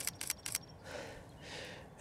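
A few quick, sharp clicks in the first half second, then two soft breaths.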